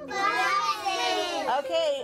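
Several young children talking and calling out at once, an excited jumble of high voices.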